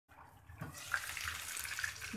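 Chicken pieces shallow-frying in a little hot oil, sizzling with a steady hiss that grows louder about half a second in as the glass lid comes off the pan.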